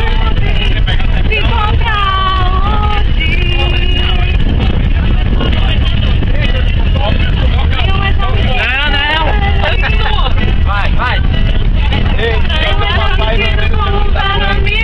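Bus engine and road noise rumbling steadily inside a moving coach, under young voices shouting and singing over one another.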